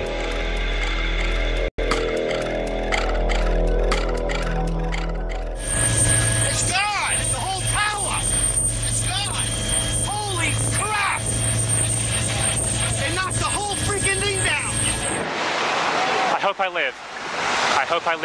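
Held music tones for about five seconds, then a sudden cut to field-recorded sound of the tower collapse: several people's voices shouting and crying out, with a steady low hum and a thin high whine. About three seconds before the end comes another cut, to a loud rushing noise like wind on the microphone as the dust cloud arrives, with voices over it.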